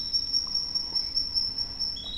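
Steady, high-pitched insect trilling in the background, two thin tones held without a break.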